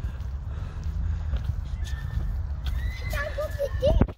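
Wind buffeting the microphone, a steady rumble. Near the end come a few short wavering squeals, and then a thump.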